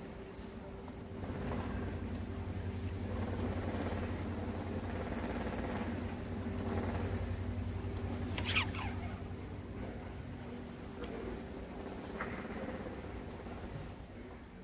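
A steady low mechanical hum with a few fixed tones, under a noisy wash that grows louder about a second in and eases off after about nine seconds. A brief falling squeal cuts through about eight and a half seconds in.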